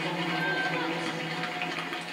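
Steady background sound of a speed-skating broadcast heard through a television speaker, with a low hum underneath and a brief faint tone about half a second in.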